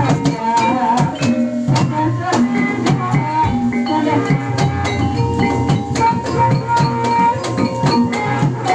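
Live Javanese gamelan-style music: a drum and struck metal keyed instruments keeping a steady beat, with a held, wavering melody line above.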